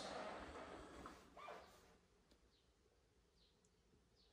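Near silence: the room tone of an empty room, with a faint brief sound about a second and a half in.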